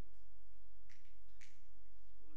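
Two finger snaps about half a second apart, the first about a second in, over a steady electrical hum.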